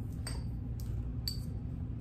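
Small glass bottles clinking against each other a few times as they are handled and packed into a box. The clinks, about three of them, are short, and two ring briefly, over a steady low hum.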